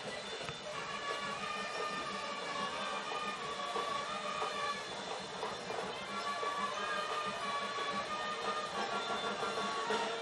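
Band music: long held notes that change pitch every second or two, under a murmur of background voices.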